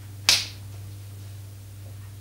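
A single sharp snap about a quarter of a second in, over a steady low electrical hum.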